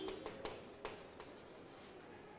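Chalk writing on a blackboard: faint scratching with a few light taps as the chalk strikes the board.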